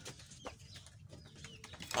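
Quiet farmyard background with a few faint, brief bird calls and light clicks, no single loud sound.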